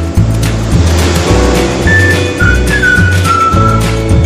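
Background music with a steady bass beat and held chords; about halfway in, a high melody line enters that slides between notes.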